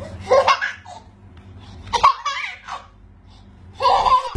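A baby laughing in three peals: one just after the start, a longer one about two seconds in, and a short one at the very end.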